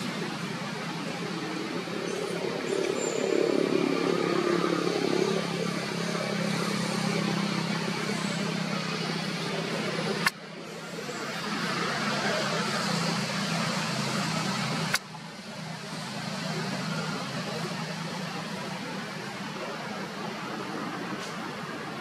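Steady outdoor background noise with a low hum, broken twice by sudden cuts, each with a click.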